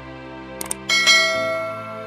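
Background music with a short double click about half a second in, then a bright bell ding that rings and fades: the click-and-bell sound effect of a subscribe-button animation.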